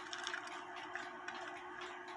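Faint ticking of a Lux Pendulette clock's mechanical movement, a few light clicks over a steady low hum.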